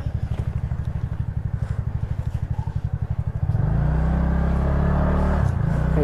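TVS Ntorq 125 scooter's single-cylinder engine running at low speed with an even low putter. About three and a half seconds in the throttle opens and the engine note grows louder and steadier, then eases back near the end.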